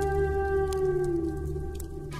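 Native American flute holding one long note that sags slightly in pitch and fades near the end, over a steady low drone.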